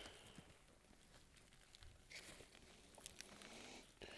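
Near silence, with faint rustling and small ticks of soil crumbling off a freshly pulled clump of bulbous leek bulbs, and a short rustle a little past halfway.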